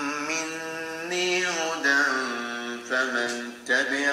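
A solo voice chanting in long held, gliding notes, played back from an mp3 through the Huawei Mate 20 Pro's own loudspeakers, which sound from the USB Type-C port and the call earpiece. The chant dips briefly a little after three seconds in.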